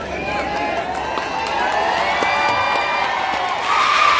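An audience of many voices talking and cheering at once. Near the end a single long, high, level call rises above the crowd.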